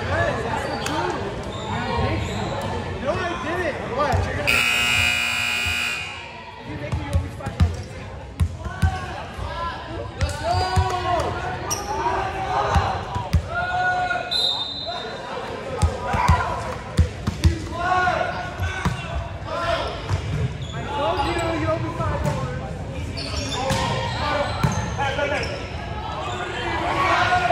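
An electric gym scoreboard buzzer sounds once, about a second and a half long, near five seconds in. Around it, a volleyball is bounced and struck on the hardwood court, and players' voices echo through the large gym.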